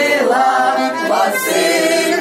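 A small group of carolers singing a Ukrainian New Year carol (shchedrivka) together in unison, unaccompanied, with several voices blending.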